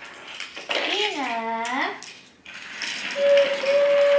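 Small toy trains clinking against each other and the hardwood floor as they are handled. About a second in, a voice makes a drawn-out, wavering 'ooh' whose pitch dips and rises. Near the end a steady single tone holds for about a second and a half.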